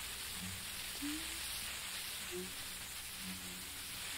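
Steady tape hiss from an old radio aircheck recording, with a few faint short hummed notes, some rising slightly: the singer softly finding her starting pitch before singing unaccompanied.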